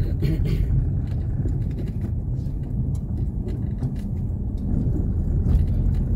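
Car driving slowly on a street of interlocking concrete pavers: a steady low rumble of engine and tyre noise.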